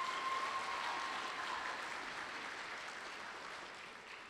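Audience applauding, loudest at the start and slowly dying away. A thin steady tone sounds over the first second and a half.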